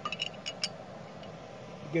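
A quick run of about five light metallic clinks in the first second, a steel bolt knocking against the steel hitch bracket as it is lined up with the bracket holes.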